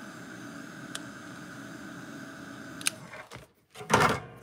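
Small handheld hair dryer blowing steadily over a painted art-journal page, then switched off about three seconds in. A loud knock comes near the end.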